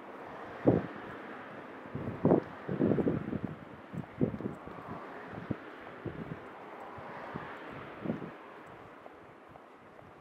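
Wind buffeting the microphone in irregular gusts, over the steady noise of car traffic on the road alongside, with a car passing about halfway through.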